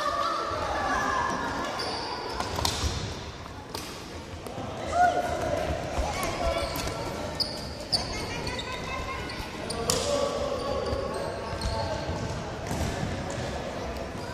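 Floorball game noise: children's voices shouting and calling out, with frequent sharp clacks of plastic floorball sticks and ball striking each other and the wooden floor, echoing in a large sports hall.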